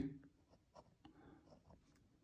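Faint scratching of a pen writing numerals on squared paper, a few short strokes.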